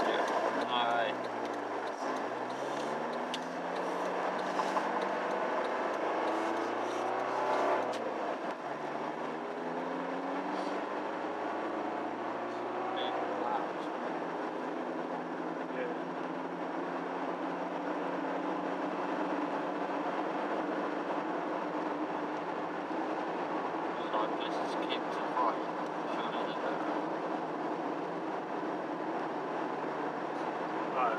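A car's 1.9-litre diesel engine heard from inside the cabin, pulling away and accelerating through the gears. The pitch rises and drops back with each change during the first half, then holds steady at a cruise over tyre and road noise.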